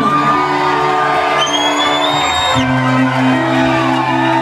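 A rock band playing live in a hall, sustained keyboard chords holding and shifting to a new chord about two and a half seconds in, with whoops from the crowd. A thin high gliding tone sounds over the music for about a second in the middle.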